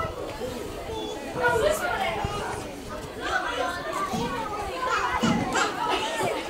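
Young players and onlookers shouting and calling out across a football pitch during play, several voices overlapping, with a steady low rumble underneath.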